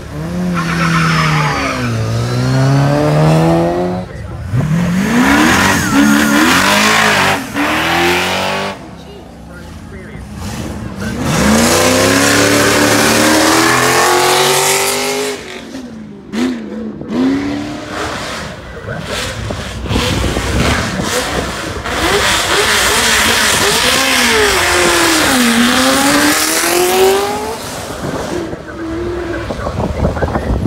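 Car engines accelerating hard away from a start line, several runs one after another, the first a classic Mini. Each engine revs up through its gears: the pitch climbs, drops at each shift and climbs again.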